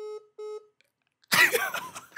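Two short, evenly spaced beeps from a mobile phone: the call-ended tone after the other end hangs up. About a second later comes a loud burst of a man's laughter.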